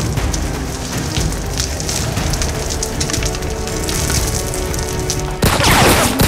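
Tense dramatic score playing steadily, cut through about five and a half seconds in by a sudden loud gunshot crack as a bullet strikes the wall.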